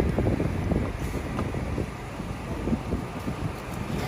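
Wind buffeting the microphone, an irregular low rumble.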